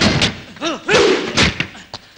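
Film fight sound effects: several heavy blows and thuds, with short shouted grunts from the fighters between them.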